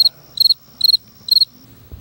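Cricket chirping sound effect, four short high chirps about two a second over a faint steady high tone: the comic 'crickets' gag marking an awkward silence, here the suspect refusing to answer.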